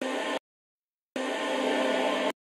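Reverb-drenched vocal sample chopped on and off by an Xfer LFOTool volume gate. It sounds as a short burst, then a gap of about three-quarters of a second, then a longer sustained stretch with hard cuts at each edge.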